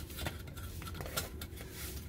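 Stainless steel pressure cooker lid being twisted and lifted off the pot: a few light metal clicks and scrapes over a low steady hum.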